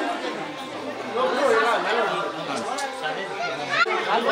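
Crowd chatter: many people talking at once as they walk, with no single voice standing out.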